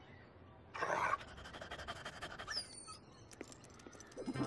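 Cartoon dog panting: a breathy rush about a second in, then a run of quick short pants, with a brief high squeak near the middle.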